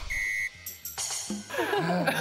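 Edited-in comedy sound effects: a short, steady, high beep, then brief sparkly effect sounds and a few low notes.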